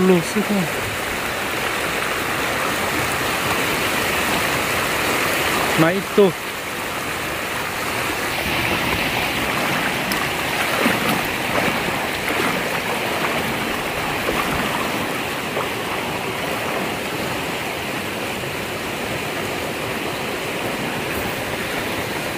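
Shallow, rocky stream running steadily over stones and small riffles: an even, constant rush of water.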